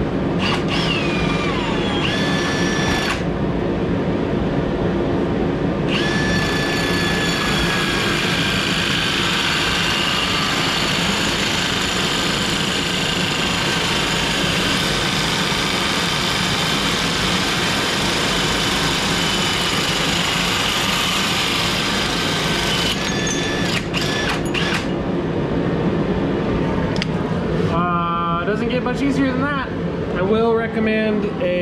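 Milwaukee M18 Fuel cordless drill driving a hole saw through steel tubing in a billet tube notcher: the motor runs up and down in the first seconds, then runs steadily under cutting load with a grinding cut. It stops near the end, followed by a few sharp clicks.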